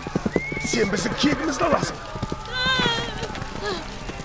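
Battle sound effects: a fast run of hoofbeats from galloping horses in the first second and a half, then a horse neighing with a high, wavering call about two and a half seconds in, over shouting voices.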